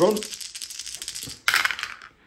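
A handful of translucent plastic dice rattled in a cupped hand, then thrown into a wooden dice tray about one and a half seconds in with a short, loud clatter as they land and settle.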